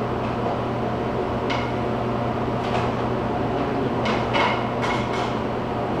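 Tape being pulled and wrapped around a bundle of split firewood: several short scraping pulls, with brief squeaks ('singing') about four to five seconds in, over a steady low hum.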